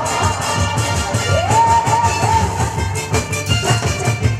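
Upbeat trot music played loud over a PA, with a steady low beat under a gliding melody line that holds one long note about halfway through.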